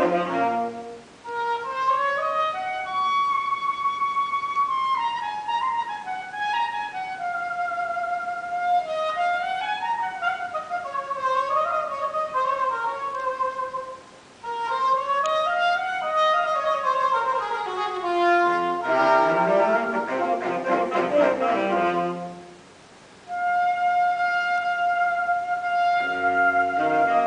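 Saxophone quartet playing live. A single saxophone melody winds up and down for most of the passage, with two short breaks. Near the end all four voices play chords together, pause briefly, and come back in under a held note.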